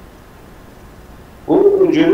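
Steady low background hiss, then about a second and a half in a person's voice starts loudly on a drawn-out, wavering vowel.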